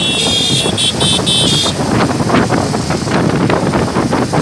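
Wind buffeting the microphone over the engines of a motorcycle procession. A horn sounds in a quick run of short toots during the first second and a half.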